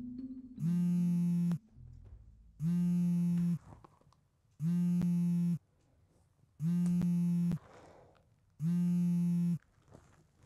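Mobile phone alarm going off: a harsh, low buzzing tone about a second long, repeating every two seconds, five times.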